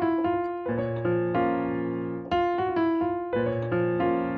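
Piano playing a short gospel lick of quick half-step notes (F, G-flat, F, E, F) that leads into a rolled B-flat minor chord, which is then held. The lick and the rolled chord are played twice, the second time starting a little after two seconds in.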